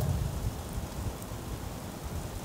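Steady low background noise with no distinct events: room tone and microphone hiss.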